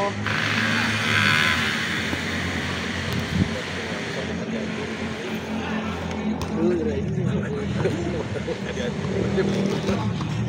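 Outdoor ambience at a floodlit football pitch: a steady low hum under a noisy background, with faint distant players' voices and calls, most noticeable a little past the middle.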